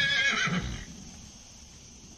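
A horse whinnying: one high call that wavers and trails off within the first second.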